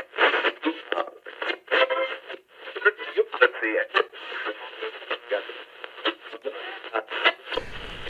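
Voices as heard through a small radio speaker: thin, tinny snippets of speech with no bass, changing every second or so, as if tuning across stations.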